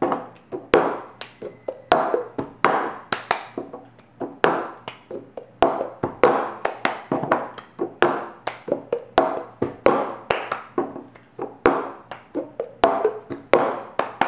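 Cup game rhythm: hands clapping, slapping the tabletop and a plastic cup being lifted, knocked and set down on the table, in a steady repeating pattern of sharp strikes.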